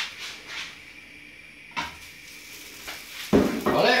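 Dishes and cookware handled on a kitchen worktop: a light click about two seconds in, then a loud knock of something set down near the end.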